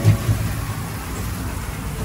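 Egg frying on hot iron griddle pans, a steady rain-like sizzle with a low rumble underneath.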